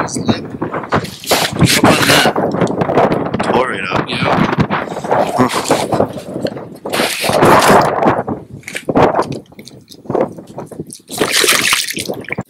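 Wind buffeting the microphone on open lake ice in loud, uneven gusts.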